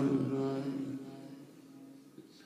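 A man's voice chanting a Persian mourning elegy (rowzeh), ending a line on a long held note that fades away over about a second, followed by a near-quiet pause before the next line.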